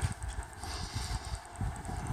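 Faint, irregular soft thumps of a cat's paws stepping across a car's sheet-metal roof, over a light background hiss.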